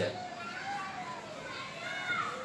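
Faint distant voices in the background during a pause in speech, with faint wavering pitched sounds coming and going.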